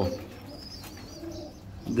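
Domestic pigeons cooing softly in the background.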